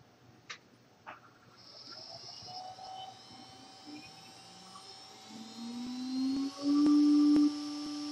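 CNC router starting a cut: two short clicks in the first second, then the spindle spinning up with a rising high whine. About five seconds in, a lower motor whine joins and rises in pitch. It is loudest around seven seconds, then settles into a steady hum.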